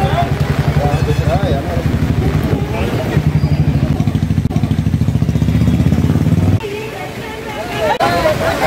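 A small engine running close by, a steady low throb with faint voices over it, cutting off abruptly about six and a half seconds in.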